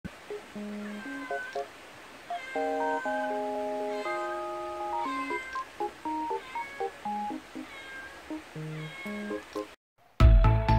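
Cat meowing again and again, short high calls about once a second, over light background music. The sound cuts off just before the end.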